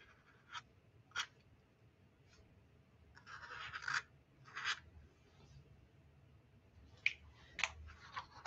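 Faint scratchy strokes of a black pen tip drawing outlines on watercolour paper, in short bursts about three seconds in, with a few light ticks.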